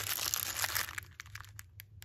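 Small clear plastic bag crinkling as it is handled. After about a second the rustle dies down into a few light clicks.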